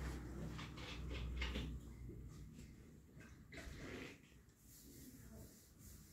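Quiet crackles and clicks of a plastic bottle handled in gloved hands, a few scattered through the first four seconds, over a low hum that fades about two seconds in.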